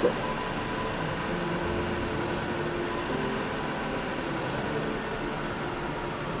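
Steady, even background noise like a hiss or hum, with a few faint held tones and no distinct events.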